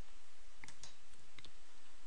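Computer mouse clicked twice to advance a slide, each click a quick double tick of press and release, over a steady low hiss.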